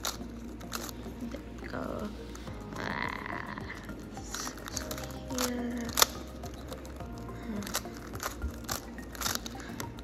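A magnetic GAN Skewb M puzzle being turned by hand during a solve: a run of irregular plastic clicks and snaps as its corner pieces rotate into place, with one sharper click about six seconds in.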